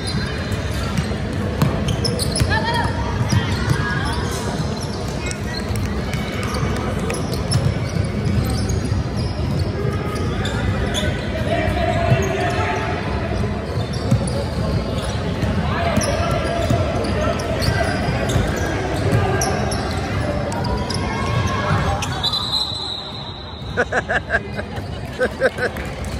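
Basketball game in a large echoing gym: a basketball bouncing on the hardwood court amid a continuous din of players and spectators calling out.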